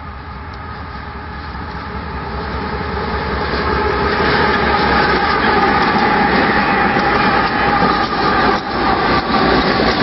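Union Pacific freight train passing close by: its three diesel-electric locomotives grow louder over the first five seconds as they approach and pass, then the empty oil tank cars roll by on the rails.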